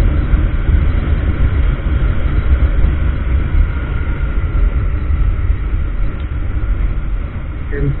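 Steady low rumble of wind buffeting the microphone, mixed with road noise, on a moving Honda Grazia 125 scooter, with a faint steady whine underneath.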